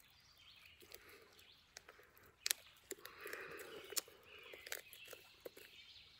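Faint crinkling and a few sharp clicks from a small plastic seasoning packet being bitten and tugged with the teeth to tear it open, because it has no tear notch.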